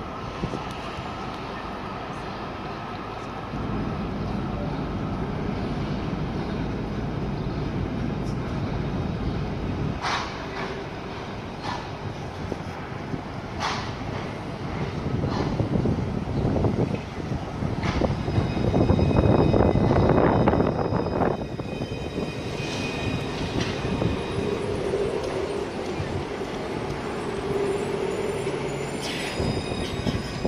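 C-class (Alstom Citadis) tram approaching on street track and drawing up alongside, its running noise building to its loudest about two-thirds of the way through. A thin high squeal comes in at that point, and a lower steady hum follows as it slows near the end.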